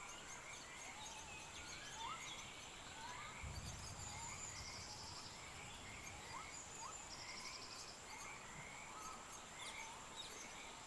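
Faint outdoor birdsong: short rising chirps repeated every second or so, with two brief high trills. A steady thin high-pitched tone runs underneath, and there is a brief low rumble about three and a half seconds in.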